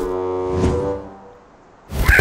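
Cartoon background music: a held chord with a brief swell, fading out about a second in and leaving a quiet moment before the next sound.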